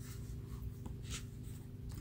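Faint rustle of a paper booklet's pages being handled, with one short soft swish about a second in, over a steady low hum.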